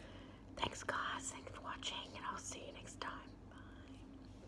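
A woman whispering in short phrases.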